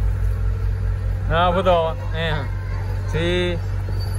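Men's voices in a few short utterances over a steady low rumble, like a nearby engine running.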